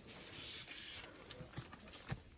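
Faint handling noise of a gloved hand squirting herbicide from a plastic squeeze bottle onto a cut stump, with a few light taps in the second half.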